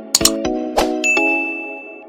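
Subscribe-button animation sound effects: a quick double click, another chime strike, then a bright notification-bell ding whose single high tone rings on for about a second, over a bed of chiming tones.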